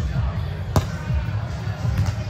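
A volleyball struck on the serve: one sharp slap of a hand on the ball about three-quarters of a second in, over low rumble and voices in a large hall.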